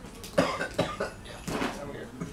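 A person coughing several times in short, separate bursts.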